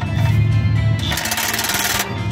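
Cordless power tool tightening a fastener under the truck, with a rapid rattle starting about a second in, over background music.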